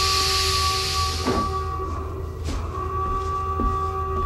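Sci-fi film soundtrack: an electronic drone of several held tones over a low rumble. A loud hiss fades out over the first second and a half.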